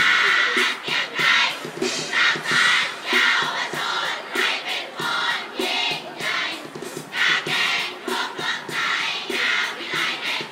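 A large group of children chanting and singing a cheer together in short, rhythmic bursts, with music.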